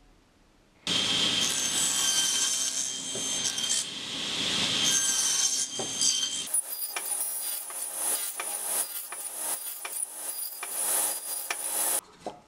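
Table saw blade cutting into a spruce board, starting suddenly about a second in with a loud, steady whine over the rasp of the wood. About six and a half seconds in the whine shifts higher and breaks into a run of short rasping strokes as the board is pushed through repeated passes to cut a notch.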